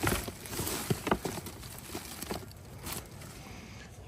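Shredded leaves and crushed twigs rustling as a gloved hand rummages through them in a plastic bin, with a few sharp crackles along the way.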